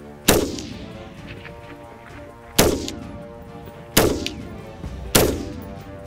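Four single shots from a .223 AR-15 rifle, each a sharp crack with a short ringing decay. They come unevenly spaced, the gaps shortening from about two seconds to just over one. Faint music runs underneath.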